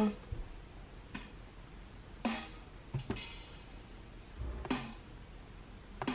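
Sampled drum-kit sounds from a drum-pad app, played through a tablet's speaker as a finger taps the pads: about six separate hits roughly a second apart, two of them in quick succession about three seconds in.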